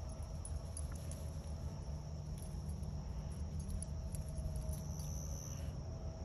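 Steady high-pitched insect chorus of crickets trilling, over a low steady rumble.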